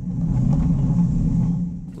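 Steady low rumble of a robot waiter rolling across a restaurant floor, its wheels and drive carried straight into a camera riding on its serving tray.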